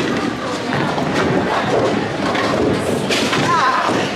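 A bowling ball thuds onto the lane and rolls away, over the steady din of a bowling alley.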